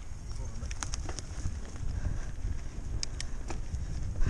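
Mountain bike rolling along a dirt trail, recorded by a bike- or body-mounted action camera: a steady low rumble of tyres on dirt and wind on the microphone, with a few sharp clicks and rattles from the bike about a second in and again about three seconds in.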